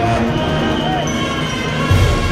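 Processional band music: a slow funeral march with sustained brass chords and a deep drum beat near the end, over crowd voices.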